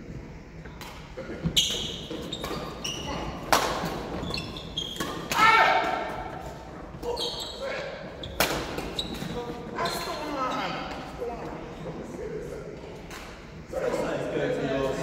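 Badminton racket strings striking a shuttlecock in a doubles rally: a string of sharp hits, a second or two apart, with the echo of a large sports hall.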